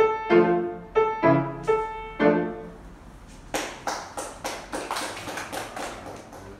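Grand piano playing its last few chords, the final one ringing out and dying away. About three and a half seconds in, hand clapping starts, about three claps a second.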